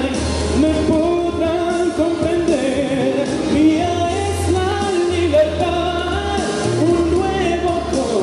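A man singing a melody into a handheld microphone, holding and sliding between notes, over instrumental accompaniment with a steady bass line.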